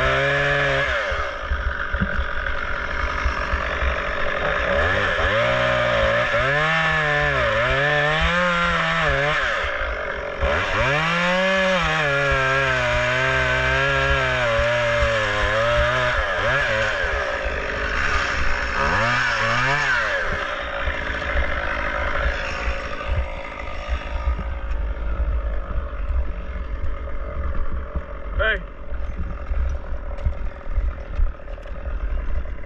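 Two-stroke chainsaw cutting through a pine trunk, its engine pitch repeatedly sagging and climbing as the chain loads up in the wood. The cutting ends about twenty seconds in, followed by uneven crackling and knocking noise.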